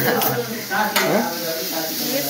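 Stir-frying in a wok: food sizzles as a metal spatula stirs and scrapes the pan, with voices over it and a sharp click about a second in.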